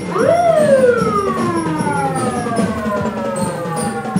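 A siren gives one wail: it winds up quickly to its peak in the first half-second, then slowly falls in pitch over the next few seconds.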